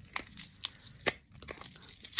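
Hands handling things close to the microphone: crinkling rustles with a handful of sharp clicks, the loudest about a second in.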